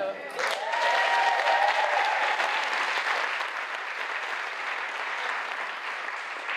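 Audience applauding, with one long whoop rising and then held over the first two seconds; the clapping eases slightly toward the end.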